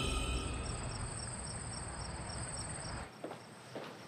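Crickets chirping in a steady pulse, about four chirps a second, as night ambience over the fading tail of low music. The chirping cuts off suddenly about three seconds in, followed by a couple of faint clicks.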